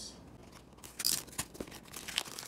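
A utility knife blade cutting through the plastic shrink wrap on a small cardboard box: a short scratchy rasp about a second in, then a few light clicks and crinkles as the wrap is handled.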